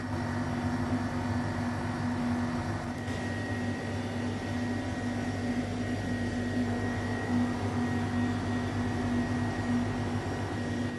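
A steady machine hum with a constant low tone under an even background whir, unchanging throughout.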